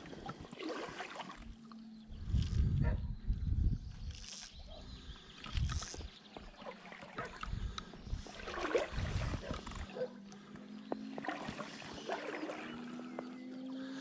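Footsteps and handling noise as an angler moves along a riverbank with a fly rod: irregular low thumps and light rustling, loudest a few seconds in. A faint steady drone sits underneath and rises slightly near the end.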